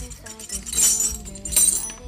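Metal wrenches and pliers clinking and clattering against each other and the ceramic tile floor as they are set down, twice: about a second in and again near the end.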